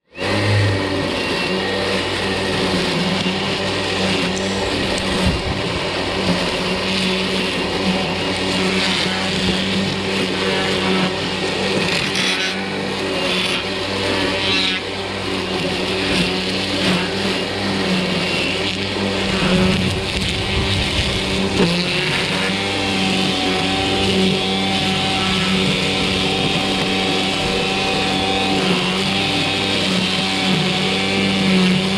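EGO 56V cordless string trimmer running at a steady speed, its freshly loaded line whirring through grass. A few brief ticks come about halfway through.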